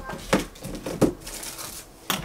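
Rummaging through a dresser drawer: items being shifted with crinkling and rustling, and a couple of sharp knocks, the first about a third of a second in and the second about a second in.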